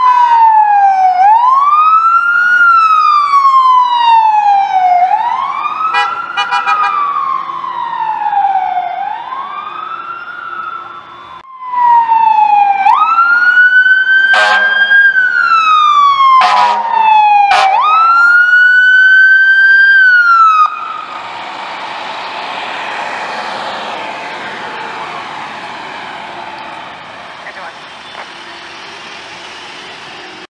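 Electronic wail sirens on emergency fire vehicles, each sweep rising quickly and falling slowly about every four seconds. First comes the command pickup's siren, then the KME pumper fire engine's, with two short loud blasts breaking in. The engine's siren cuts off suddenly about 20 seconds in, leaving a rushing road and engine noise that slowly fades.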